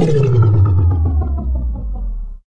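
Cinematic logo-reveal sound effect. A swelling whoosh peaks right at the start, then drops in pitch into a deep, sustained low boom with a faint shimmer above it. It is loud and holds to the end.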